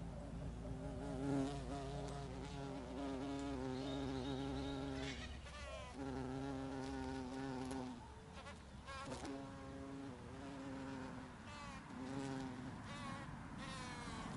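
A flying insect buzzing close by in a steady droning hum, breaking off and starting again several times.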